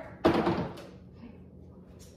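A SodaStream machine set down on a stone kitchen countertop: one dull knock about a quarter second in, dying away within half a second.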